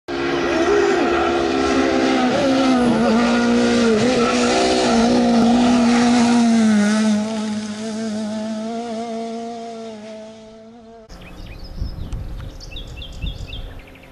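Rally car engine running at high revs along a tarmac stage, its pitch rising and dipping again and again, then fading away over several seconds. About eleven seconds in the sound cuts to a much quieter stretch with short high chirps.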